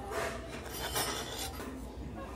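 Metal spatula scraping across a steel teppan griddle as a portion of okonomiyaki is cut and lifted, rasping twice.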